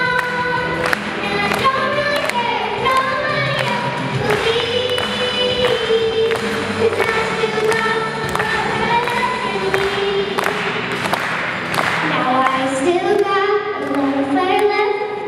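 Two young girls singing into handheld microphones over a backing track with a steady beat.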